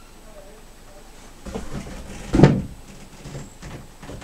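A single loud thud a little past halfway, with softer knocks and rustling just before and after it.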